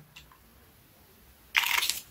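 Near silence, then about one and a half seconds in a brief burst of plastic clicking and crackling as the small dropper bottle of natural betaine is handled.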